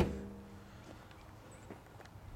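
The hood of a 2011 Nissan Leaf slammed shut, its panel ringing with a few clear tones that fade over about a second, followed by a few faint ticks.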